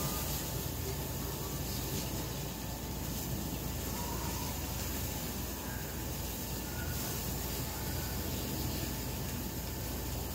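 Steady background hiss with a low rumble, even throughout and with no distinct events.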